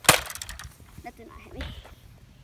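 A Nerf dart blaster firing once: a single sharp snap right at the start, followed by quieter low rumbling handling noise.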